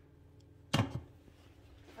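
A single sharp clink of a stainless steel lid being set back onto a pot, about three-quarters of a second in, over otherwise quiet room tone.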